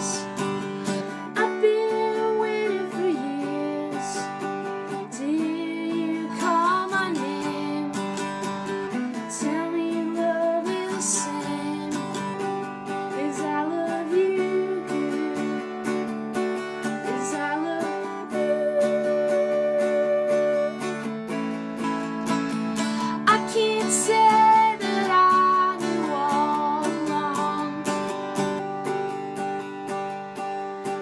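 An acoustic mandolin played solo: a picked melody over strummed chords, as an instrumental passage of a song.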